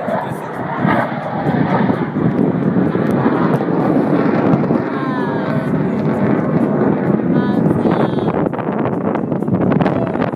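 Jet aircraft noise overhead, a steady rushing roar that swells about a second in, mixed with people's voices and wind on the microphone.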